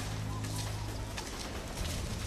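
Outdoor ambience with birds calling over a steady low background hum, and soft footsteps of people walking on grass.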